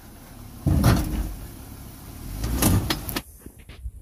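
Jeep Wrangler Rubicon crawling slowly over boulders: a low engine rumble that swells suddenly about a second in, with knocks from tyres or underbody on rock once then and again near three seconds, before the sound cuts off.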